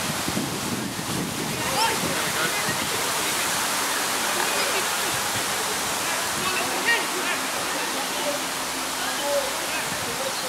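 Faint, distant voices of players and spectators calling out over a steady hiss of outdoor noise.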